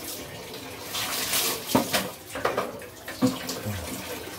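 Water splashing and wet scrubbing on ceramic bathroom tiles, in irregular swishes with a few sharp knocks.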